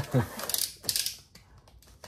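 Cardboard shipping box wrapped in packing tape being grabbed and shifted by hand: a short burst of scraping and crackling in the first second, fading to faint handling noise.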